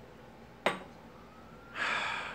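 A person sniffing a freshly poured glass of beer: a long, hissing inhale through the nose that starts near the end, after a single short click about two-thirds of a second in.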